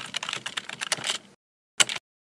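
Computer keyboard typing sound effect: a quick run of key clicks that stops about one and a half seconds in, then a short second burst of clicks near the end.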